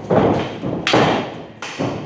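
Kali sparring sticks striking the fighters' padded protective gear: three sharp hits, roughly three-quarters of a second apart.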